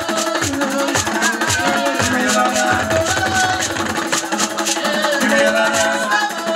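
Live band music: electric guitar lines over bass guitar and drums, with a quick, even rattle of hand percussion.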